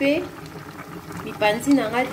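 Water at a rolling boil in an enamel pot of smoked ribs, bubbling steadily, with a voice over it at the start and again in the second half.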